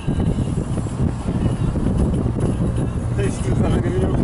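Road and engine noise inside a moving car: a steady low rumble.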